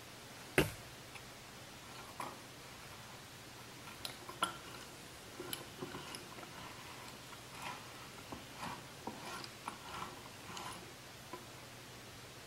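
Faint, irregular clicks and ticks as a Teflon pulley on a hand-turned threaded-rod axle is worked along a timing belt to move the lathe carriage on its rails. The axle turns without bearings, which makes it a little noisy. One sharp click about half a second in is the loudest.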